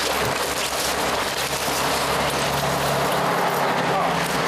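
Steady outdoor street noise with traffic running.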